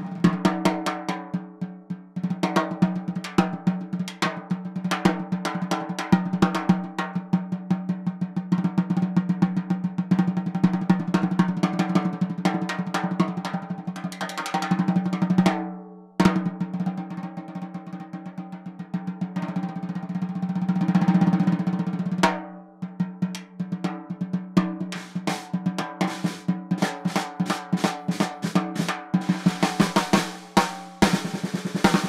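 Ludwig Acro brass-shell snare drum played with sticks: fast strokes, rolls and accents, with a clear pitched ring from the drum. The playing breaks off briefly twice, about halfway through and again a few seconds later.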